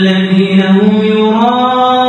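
A man chanting in Arabic into a mosque microphone. He holds one long, drawn-out note that rises slightly partway through.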